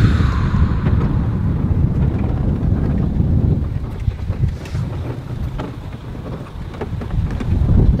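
Wind buffeting the microphone outdoors: a loud, uneven low rumble that begins abruptly at a cut.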